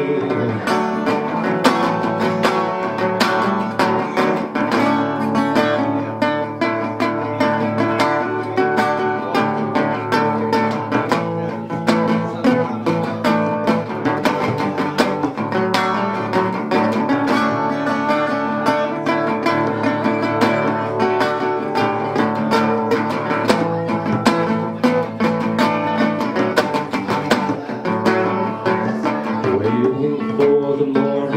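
Metal-bodied resonator guitar played live as an instrumental passage of continuous picked and strummed notes, with no singing.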